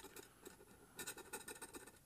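Faint, rapid scratching of a metal scratcher over the silver latex coating of a scratch-off lottery ticket, with a short pause about half a second in before the strokes resume.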